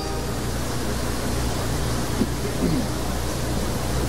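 Steady open-air ambience of a stadium crowd heard through the sound system, with a constant low hum. A faint voice or two can be heard briefly about two seconds in.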